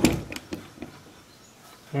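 A few light clicks in the first second as the partly disassembled M1 Garand rifle is handled.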